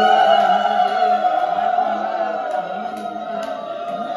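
A group of voices singing or chanting together on a long held note, a devotional chant, with sharp hand claps coming in during the second half.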